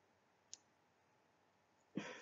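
Near silence: room tone, with one faint short click about half a second in and a slight sound just at the end.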